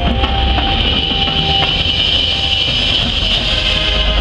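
Marching band playing a loud sustained ensemble passage that swells toward the end, dense and blended rather than separate notes.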